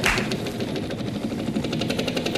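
Game-show prize wheel spinning, its pointer clicking rapidly and evenly over the pegs on the rim.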